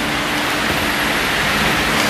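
A loud, steady rushing hiss with a faint low hum underneath.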